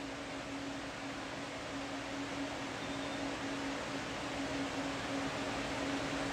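Steady background hiss with a constant low hum: room tone.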